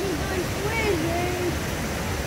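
A child talking in a high voice over the steady rush of water around a river-rapids ride raft.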